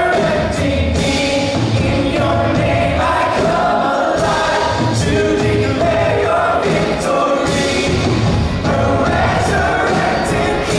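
A large church choir singing a worship song with held notes, backed by a live band.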